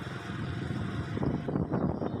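Small engine running steadily at low speed, with road noise from the moving vehicle the recording is made from.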